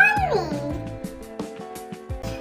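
Background children's music with held notes and a soft beat. At the very start a voice says the word again in a drawn-out tone that rises and then falls, which a tagger could take for a meow.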